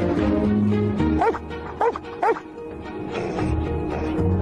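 Film soundtrack music, with three short dog cries from husky sled dogs about one to two and a half seconds in, each rising then falling in pitch.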